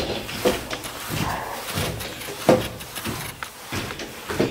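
Handling noise: padded coat fabric rustling against the camera microphone, with a few short knocks.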